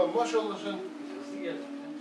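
Men's voices talking, indistinct, over a steady low hum.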